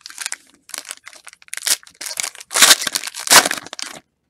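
Foil wrapper of a trading-card pack crinkling loudly as it is picked up, handled and torn open, the crackling heaviest in the second half.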